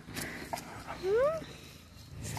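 A dog gives one short whine that rises in pitch about a second in, during rough play between two dogs.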